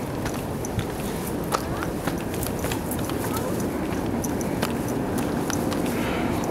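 Footsteps of a hiker walking downhill on a dirt and rock trail: irregular crunching clicks of boots on soil and stones over a steady low rushing noise.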